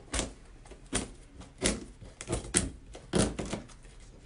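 Craft knife (X-Acto blade) slicing through stretched canvas along the edge of a wooden stretcher frame: about six short, scratchy cuts at irregular intervals.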